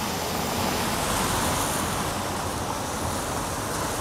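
Steady street traffic noise, cars running on the road with no single event standing out.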